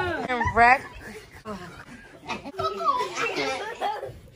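Excited voices squealing and laughing, with a sharp rising squeal about half a second in, then fast chatter.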